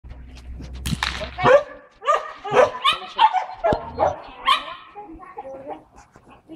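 German Shepherd barking over and over, about a half-second apart, while it waits at the start line of an agility run.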